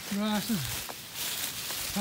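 Footsteps through leaf litter on a woodland floor, with a couple of light snaps, after a brief spoken syllable near the start.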